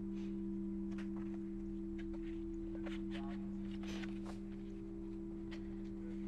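A steady low drone of two held tones, with faint paper rustles as the pages of a large book are handled and turned.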